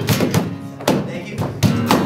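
Two acoustic guitars strummed hard in a steady rock rhythm, with a guitar case slapped by hand as a drum, thunking on the beat.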